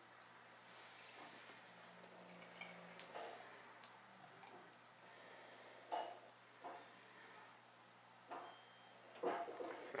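Beer poured slowly from a can into a glass: a faint pour with a few short soft sounds, the loudest about six seconds in.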